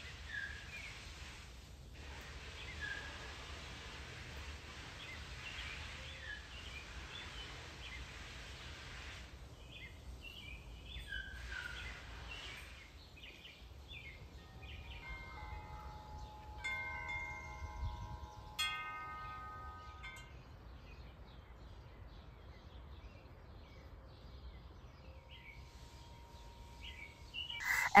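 Quiet garden ambience with small birds giving short chirps in the first half. From about 15 to 20 seconds in, a wind chime rings several held notes at different pitches.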